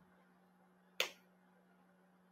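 A single sharp click about a second in, over a faint steady hum in an otherwise quiet room.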